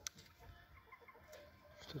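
Faint, soft clucking of chickens: a few short, quiet clucks.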